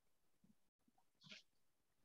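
Near silence: the quiet line of a video call, with one faint, brief sound a little over a second in.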